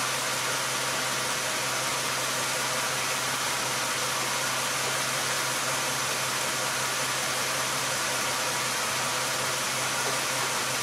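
A car engine idling steadily under a constant hiss.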